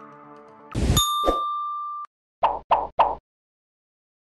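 Soft background music fades out, then a short electronic logo sting plays. A loud burst comes about three-quarters of a second in, followed by one clear ding that rings for about a second and cuts off suddenly. Three short hits then come in quick succession.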